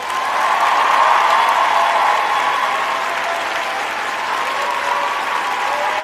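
Audience applauding after a stand-up set, strongest about a second in and easing off slightly.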